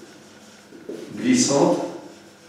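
A man's voice saying a single word about a second in, between quiet pauses of room tone.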